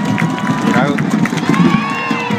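Stadium crowd of football supporters chanting and shouting, with individual shouts rising near the end.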